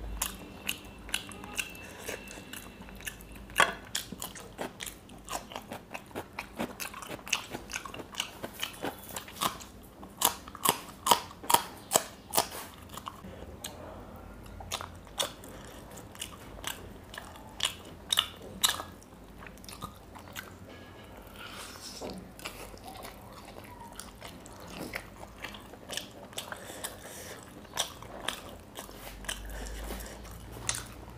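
Close-miked eating of a whole fried fish: its crisp, spice-crusted skin crackles and snaps as fingers tear it apart, mixed with crunching and chewing. The sharp crackles come in a long irregular string, thickest about ten to thirteen seconds in.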